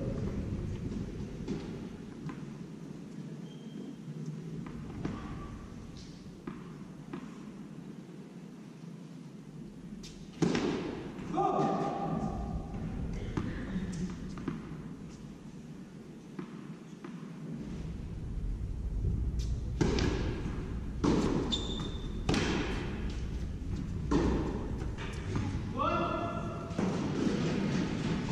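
Tennis ball knocks in a large indoor hall: sharp racket strikes and ball bounces on the court, a cluster about ten seconds in and several more in the second half, each ringing in the hall.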